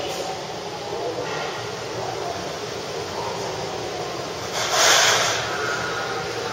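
Electric train running on the rails, a steady rumbling noise heard from on board. About five seconds in comes a short, loud hiss of air.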